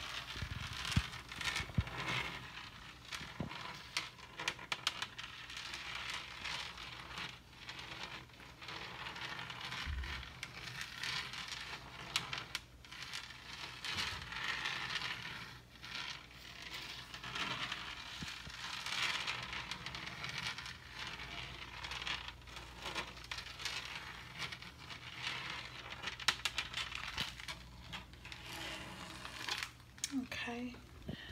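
Long acrylic fingernails scratching and tapping over a refrigerator door's textured surface: a continuous crackly scratching dotted with many sharp little taps.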